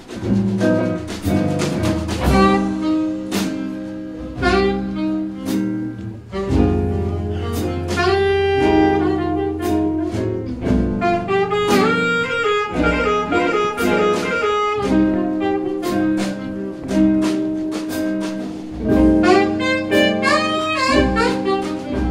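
Live gypsy jazz (jazz manouche): a saxophone plays an instrumental solo over acoustic guitar rhythm, with bass and drum kit accompanying.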